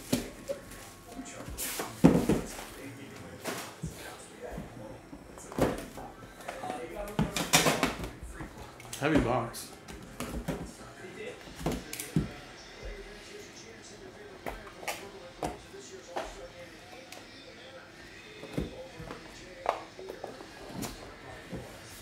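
Plastic shrink wrap crinkling and tearing off a trading-card box, then a metal collector's tin and the cardboard box inside it being handled. The result is a run of crackles, clicks and knocks, busiest in the first half.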